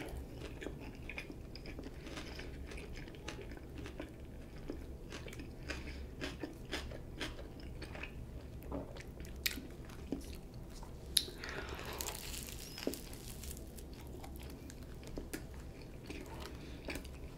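Close-miked chewing of a toasted Italian BMT sub on herbs-and-cheese bread, with small crunches and wet mouth clicks scattered throughout. A brief louder rustle of noise comes about twelve seconds in.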